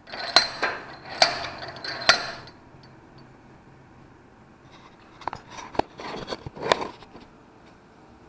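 Metal hand tools being handled on a steel workbench: a burst of sharp metallic clinks and scrapes in the first two seconds or so, a quiet stretch, then another cluster of clicks and clinks about five to seven seconds in.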